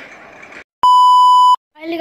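A single electronic beep: a loud, steady pitched tone lasting under a second that starts and stops abruptly, with dead digital silence on both sides, as inserted at a video edit.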